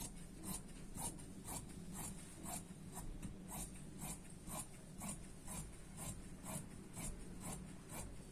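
Tailor's scissors cutting through dress fabric along a chalked pattern line, giving a faint, even run of snips about twice a second.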